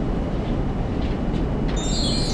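Steady low rumble of classroom room noise picked up by the camera microphone. Near the end a bright, shimmering chime-like sound starts.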